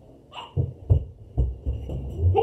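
Running footsteps thudding heavily on the floor, about five steps in a second and a half, after a short cry near the start.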